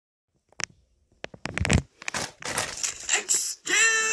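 Foil snack bag of Takis crinkling and rustling as it is grabbed and handled, preceded by a few sharp clicks. A high-pitched voice cries out near the end.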